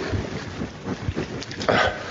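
Water, oil and ground coffee sloshing in a bottle shaken hard by hand, in uneven splashing strokes.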